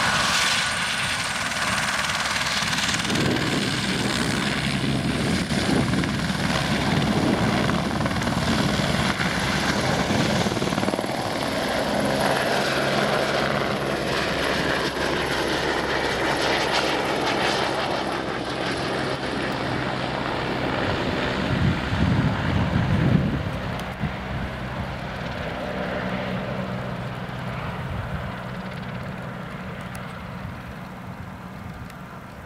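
Helicopter running close by, with a steady rotor beat and a high steady whine, as it lifts off a grassy slope and flies away. It is loudest a little past the middle, then fades toward the end.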